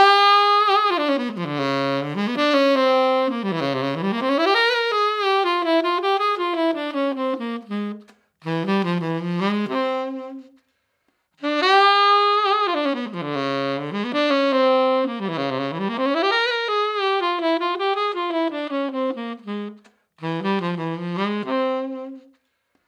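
Solo P. Mauriat tenor saxophone playing the same melodic phrase twice, with a short pause between. Each take lasts about ten seconds, with sweeping runs down and up, and ends on low held notes. The first take is heard through an sE Voodoo VR1 ribbon microphone and the second through a Royer R-10 ribbon microphone.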